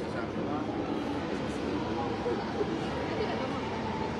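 Faint, indistinct talk from people nearby over steady background noise.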